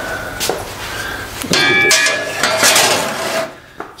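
Cut steel plate handled and set down on a perforated steel welding table: light metal knocks, then about a second and a half in a louder clang that rings with several clear tones for nearly two seconds before dying away.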